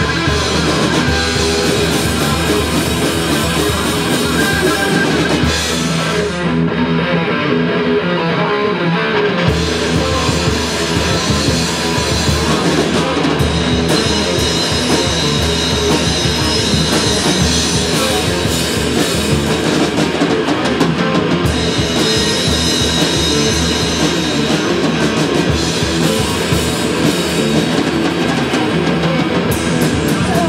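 Live heavy rock band playing an instrumental passage: distorted electric guitars, bass and drum kit. About six seconds in the drums and low end drop out for a few seconds, leaving the guitars, and the full band comes back in near the ten-second mark.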